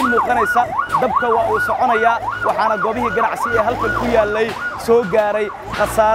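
Emergency vehicle siren in a fast up-and-down yelp, about three sweeps a second, cutting off about four and a half seconds in, with a man's voice talking over it.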